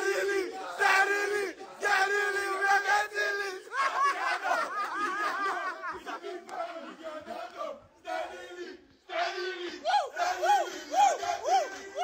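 A group of men shouting and chanting together in excited celebration, their voices overlapping, with whooping calls that rise and fall in pitch.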